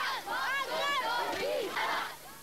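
A crowd of schoolchildren shouting welcome slogans together, many high overlapping voices.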